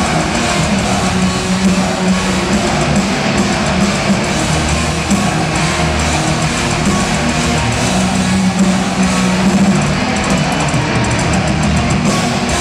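A death metal band playing live at full volume: distorted electric guitars, bass and drums in one dense, continuous wall of sound. It is heard from far back in a large concert hall through a small pocket camera's microphone.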